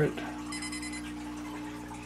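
A brief high-pitched electronic beep about half a second in, lasting about half a second, over a steady low electrical hum.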